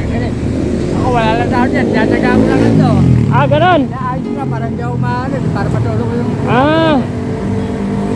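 Steady low rumble of street traffic and a running vehicle engine, with a few short vocal sounds about a second in, midway and near the end.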